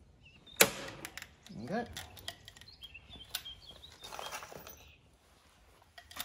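Hand pop-rivet gun setting a rivet: one sharp snap about half a second in as the mandrel breaks, followed by lighter clicks and rattles of the tool and metal.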